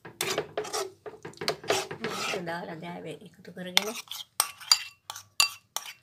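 Metal spatula scraping and knocking against a wok while stirring cooking apple jam. From about four seconds in there is a quick run of sharp clicks of metal on cookware.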